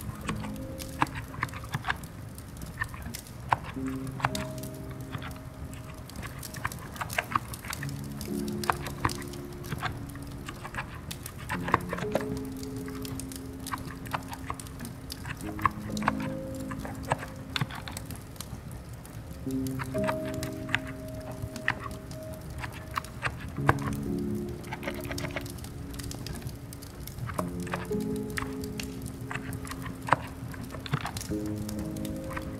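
Soft, slow background music with long held notes, over irregular light clicks of typing on a quiet electrostatic-capacitive (contactless) keyboard.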